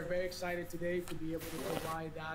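A man speaking.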